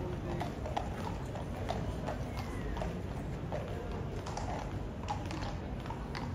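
Hooves of a shod cavalry horse clip-clopping on stone paving as it walks, a run of sharp hoofbeats a few per second, with crowd chatter behind.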